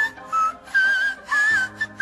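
A woman singing a string of short, very high notes in the whistle register, one of them wavering in pitch and another sliding up into place. Low, steady background music plays beneath.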